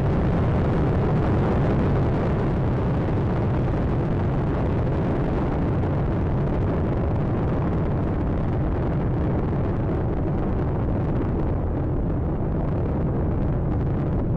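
Space Shuttle Atlantis's solid rocket boosters and three main engines during ascent: a loud, steady, deep rumble of rocket noise that neither breaks nor changes.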